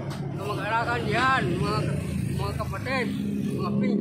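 A man talking over the steady low hum of a motor vehicle's engine, which comes up more strongly about three seconds in.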